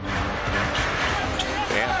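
Basketball arena game sound: steady crowd noise with a basketball being dribbled on the hardwood court during a drive to the basket.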